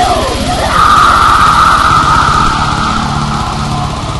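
Thrash metal music, loud, with fast, dense drumming and distorted guitars. A high sustained note rings from about a second in until about three seconds in.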